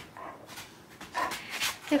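A puppy breathing noisily through its nose while gnawing a hand-held chew: a short breath near the start and a longer one a little past halfway.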